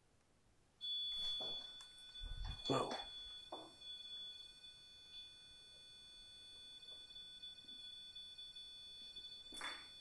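A steady, high-pitched electronic tone that starts abruptly about a second in and holds unchanged, with a faint "oh" and a few soft murmurs over it.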